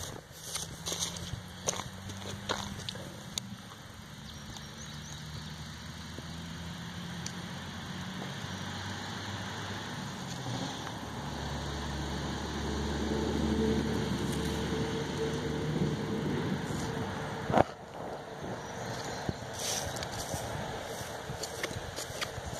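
A motor engine hums steadily in the background, slowly growing louder over about a dozen seconds and then fading, with a few sharp clicks, the loudest near the end.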